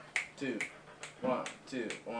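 A string of finger snaps over quiet, indistinct talk: snapping out the tempo before the band counts in.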